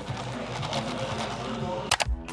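Ice cubes rattling and clinking inside a plastic cup of iced latte as the cup is shaken, with irregular light clicks, over café background music and chatter.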